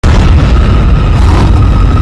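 Cartoon rocket-thrust sound effect: a loud, steady rushing rumble that starts abruptly as the cart blasts upward on its exhaust flame.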